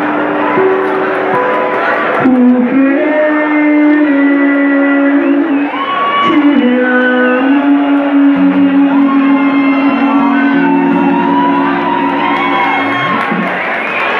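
Live music in a large hall: acoustic guitar accompanying long, held sung notes, with whoops from the crowd.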